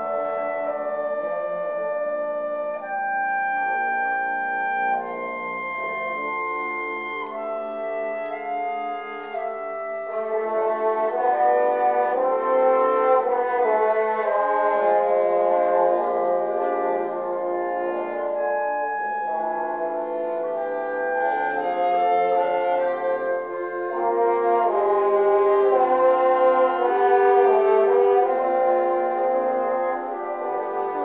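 Concert wind band playing slow sustained chords, with brass to the fore. The music swells louder about ten seconds in, eases off, and swells again for its loudest stretch near the end.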